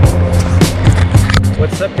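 Background music with a steady beat, about three or four beats a second, over a loud rushing noise; a man's voice starts right at the end.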